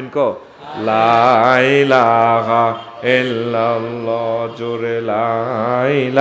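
A male preacher's voice chanting in a drawn-out, sing-song delivery: two long melodic phrases with held notes, the first starting about a second in and the second about three seconds in.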